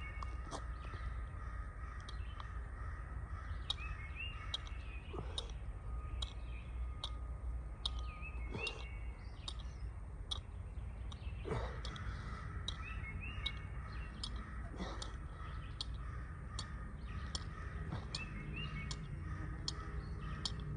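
Woodland birds calling: short high chirps scattered throughout, with a pair of short calls coming back every few seconds, over a steady low outdoor background noise.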